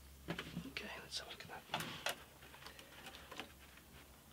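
Handling noise of a dampened wooden guitar side being worked on a hot metal bending iron and lifted off: a cluster of scrapes and sharp knocks in the first two seconds, then lighter ticks.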